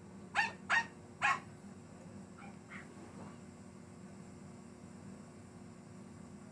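A dog barking three times in quick succession, then two fainter, shorter calls, over a steady low hum.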